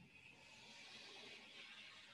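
Near silence: faint room tone, with a soft swell of hiss that rises and fades over about two seconds.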